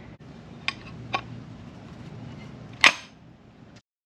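A few sharp clicks and knocks of a tool or metal part being handled at an engine block: two light ones early, a much louder one just before three seconds, over a low steady hum. The sound cuts out abruptly just before the end.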